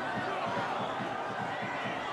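Steady background murmur of a football stadium crowd, heard through the match broadcast.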